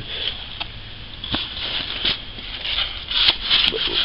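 Handling noise from an old plastic walkie-talkie turned over in the hands: a few light clicks and knocks over a soft rustle.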